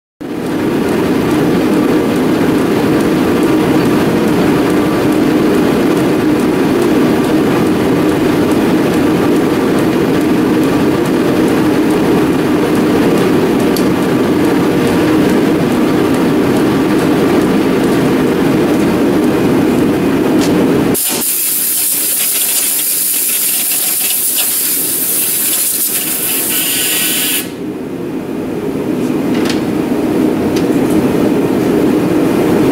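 A metal lathe running steadily while a small twist drill in the tailstock chuck drills a hole through hex bar stock spinning in the chuck. About two-thirds of the way through, the low running drone drops out and a loud high hiss takes over for several seconds before the level rises again.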